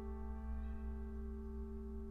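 Grand piano chord held with the keys down, its notes ringing on and slowly fading after being struck: long notes left to resonate.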